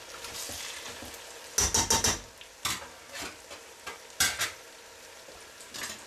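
Plov's zirvak of lamb, onion and carrot frying hard in a steel pot with a steady sizzle. A quick cluster of sharp knocks comes about one and a half seconds in, and single knocks and scrapes follow near three and four seconds, from the pot being handled and its contents stirred.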